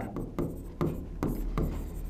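Marker pen writing on a board: a quick run of short scratching strokes, about two or three a second.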